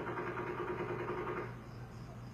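A rapid burst of distant gunfire, many shots a second in an unbroken string, that stops about one and a half seconds in.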